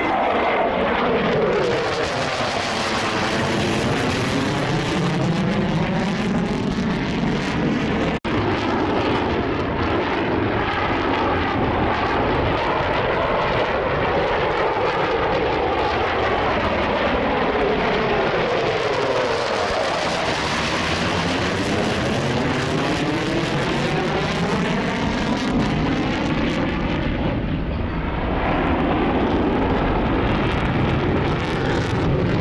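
An F-15 fighter's twin turbofan jet engines, heard as a loud, continuous roar from the jet flying overhead. A slow sweeping, phasing whoosh runs through it as the jet moves. The sound drops out for a moment about eight seconds in.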